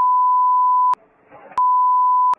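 Censor bleep: a steady 1 kHz pure tone, about a second long, then a second one starting about a second and a half in. Each switches on and off abruptly, masking speech.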